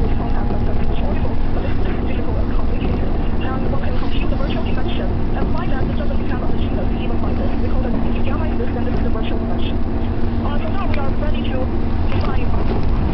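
A train running at speed, heard from inside the carriage: a steady low rumble with a constant hum. Faint, indistinct voices of passengers talking can be heard over it.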